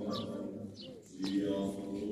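Orthodox church chanting, held notes sung on a steady pitch, breaking off briefly about a second in and resuming. Short falling bird chirps sound over it.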